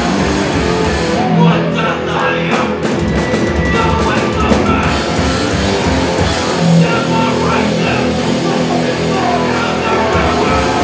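A hardcore punk band playing live and loud, with distorted electric guitars and a drum kit.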